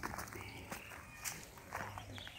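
Footsteps on dry ground, about two steps a second.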